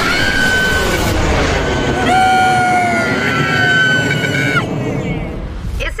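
Jet aircraft engine noise as the jet takes off down the runway, with a long, held high scream over it that cuts off about four and a half seconds in.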